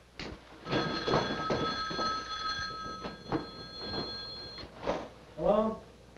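Wall-mounted telephone ringing with a steady, multi-tone bell for about four seconds, stopping abruptly, with a few knocks of footsteps on stairs. Near the end comes a brief voice.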